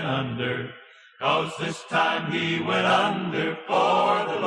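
Country gospel song: sung voices hold a long note that fades out about a second in. After a brief pause the music comes back in at full level.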